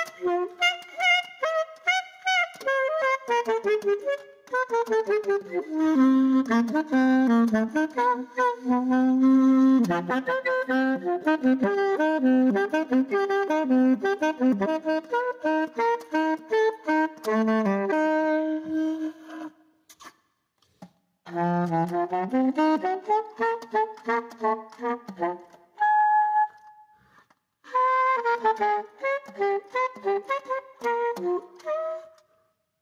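Solo alto saxophone playing free improvisation: fast, dense runs of notes across its range, with a stretch of lower repeated notes in the middle. About two-thirds of the way in the playing breaks off twice, once for a short silence and once for a brief held high note, then the runs pick up again.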